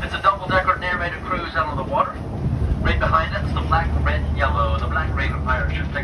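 A person talking over a vehicle's engine, whose low rumble becomes steady about two and a half seconds in.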